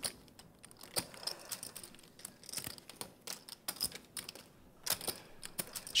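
Poker chips being handled at the table: irregular light clicks and clacks, several a second.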